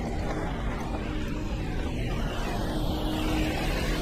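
Steady wash of city traffic noise from cars on rain-soaked roads, with a low rumble underneath.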